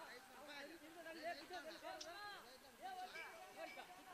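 Boys talking quietly in Kannada, a faint back-and-forth conversation.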